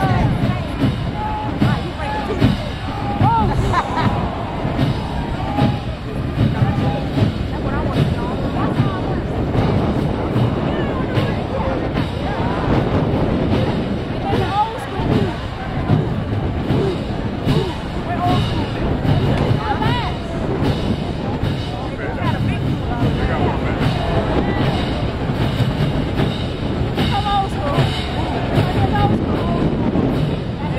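Marching band drums beating a steady cadence, about two beats a second, under a crowd talking all around.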